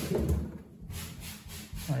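Freezer drawer of a Samsung French-door refrigerator sliding open on its rails, a rubbing sound that fades about a second in.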